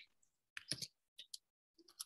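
Typing on a computer keyboard: a handful of faint, irregular key clicks.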